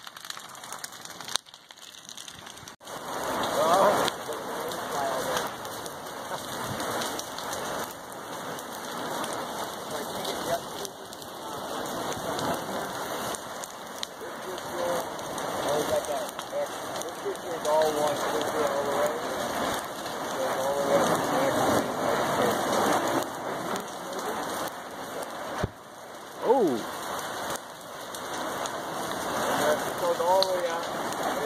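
Dense, rain-like crackling and popping from a glowing lava flow pushing into burning trees and brush. A brief gliding squeal a few seconds before the end is the loudest sound.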